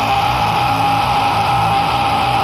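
Metalcore song: a distorted electric guitar holds one high note steadily over a dense low guitar layer, with no drum hits.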